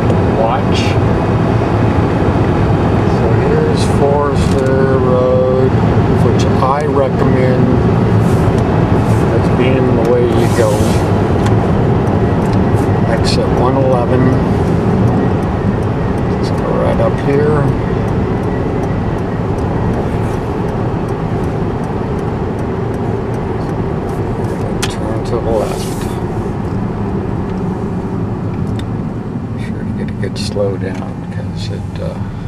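Steady engine and road drone of a car cruising on a highway, heard from inside the cabin. Now and then a voice-like sound comes over it without clear words.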